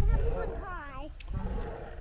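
Low rumbling wind and handling noise on the microphone of a hand-held camera moving with a swing, with a child's voice faintly underneath.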